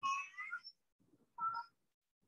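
Two short, faint, high-pitched voice-like calls, the second about a second after the first.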